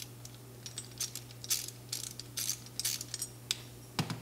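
Light, scattered clicks and taps of small metal carburetor parts being handled as a new float needle seat and gasket are fitted into an SU HS4 float chamber lid.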